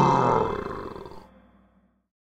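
A loud monster roar sound effect from a cartoon monster truck, fading out over about a second and a half.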